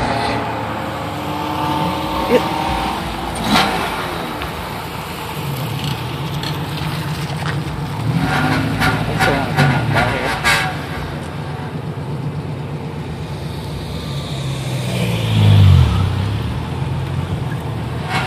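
Car engines running in the street, their revs rising and falling. The loudest moment is an engine that swells and then drops away in pitch about fifteen seconds in.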